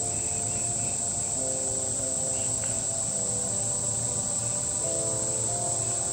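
Steady, high-pitched drone of a summer insect chorus in woodland. It is layered with soft background music of held chords that shift about a second and a half in and again near the five-second mark.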